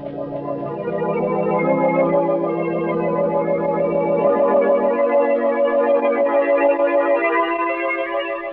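Organ music bridge: sustained, wavering chords. The bass notes drop out about halfway, and the upper chord fades near the end.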